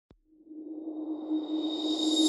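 Rising whoosh sound effect from a logo intro: a tiny click, then a swell that builds steadily louder over a steady low hum.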